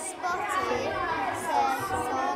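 Children's voices chattering, several talking over one another in a classroom.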